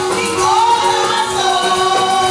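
Live gospel music: a woman singing a Spanish-language praise chorus through a microphone, holding long notes, with other voices and instruments behind her.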